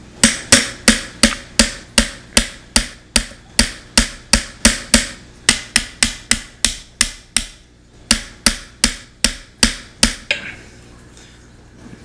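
Roughly thirty sharp taps at about three a second, with two short breaks: a red-handled tool knocking the tight cross pins into a Ruger 10/22's aluminium receiver to hold the trigger group in place.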